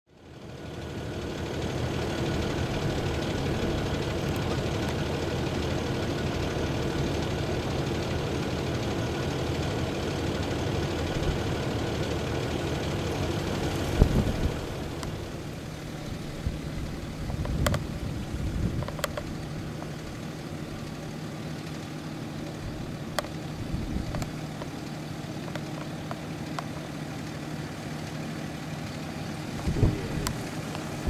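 Land Rover Discovery 4 engine running at low revs as it crawls over a rutted, eroded off-road track, with scattered knocks and clunks from the tyres and suspension on the uneven ground. The vehicle noise is louder for the first half, then a thump about halfway through, after which a quieter steady engine hum continues.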